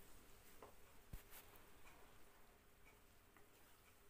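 Near silence, broken by a few faint ticks and taps from a wooden spatula stirring tomato paste and onions in a nonstick pan; the sharpest tap comes about a second in.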